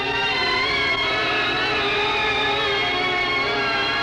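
Music played from a vinyl record copied onto reel-to-reel tape: a sustained, many-voiced instrumental chord with a slight waver, held at an even level.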